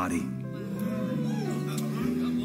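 Soft background music of long held chords, with the end of a man's spoken word right at the start.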